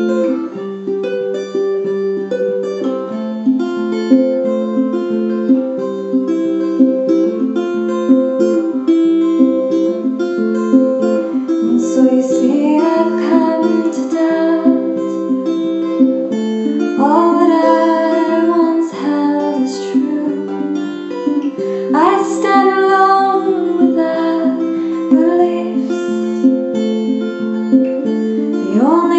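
Ozark tenor guitar picked in a steady, even pattern of single notes. A woman's singing voice comes in over it about halfway through.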